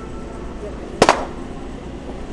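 A single sharp click or knock about a second in, over a steady low indoor hum.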